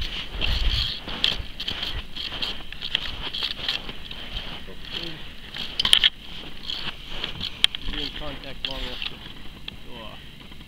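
Footsteps crunching through snow, a string of irregular crackling steps, with a brief voice near the end.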